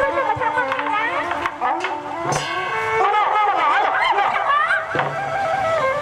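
Live Bassac theatre ensemble playing a wavering melody with held notes, punctuated by a few sharp percussion strikes.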